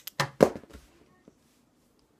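A small lipstick tube slips from a hand shaking it and lands with a few quick knocks, the loudest about half a second in, then a faint tick.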